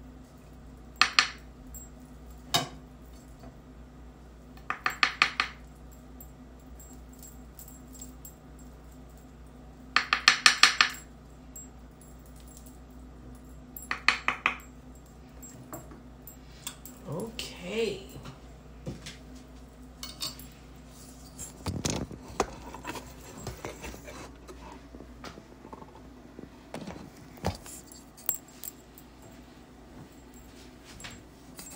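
A wooden spoon knocking and scraping against a cooking pot and dish as rice is dished up, in several short bursts of rapid taps, the loudest about ten seconds in, with a dull knock a little after twenty seconds.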